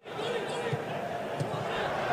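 Football broadcast sound: steady stadium crowd noise with faint voices and a few soft thuds of the ball being kicked. It comes in just after a sudden audio cut.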